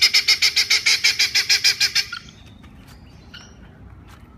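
Helmeted guineafowl calling in a rapid, evenly repeated run, about eight calls a second, which stops abruptly about two seconds in.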